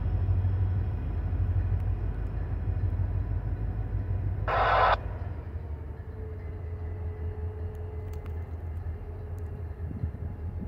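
Diesel locomotives running as they pull a train away down the yard, a low steady rumble that drops somewhat about halfway through. Just before the midpoint comes one short loud hiss lasting about half a second.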